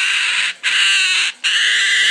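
Baby umbrella cockatoo giving a loud, harsh, hissing call, broken twice by brief pauses for breath.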